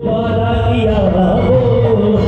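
Devotional bhajan performed live: a singer holds a long, wavering melodic line over tabla and keyboard accompaniment. A brief break in the sound comes at the very start.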